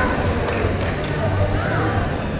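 Busy indoor badminton hall: a steady babble of many voices with a few sharp knocks from play.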